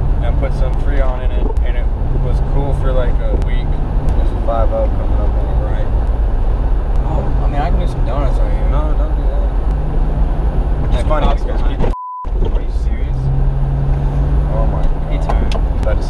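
Road and engine noise inside the cabin of a moving 1994 Jeep Cherokee: a steady low rumble with a low hum that comes and goes. About twelve seconds in, a short censor bleep replaces the sound.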